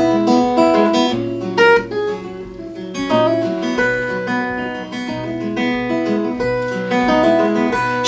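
Acoustic guitar with a capo played in a steady picked-and-strummed instrumental passage.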